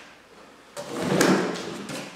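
Cardboard packaging scraping and rustling for about a second as a cardboard insert is pulled out of the box, starting partway in after a quiet moment.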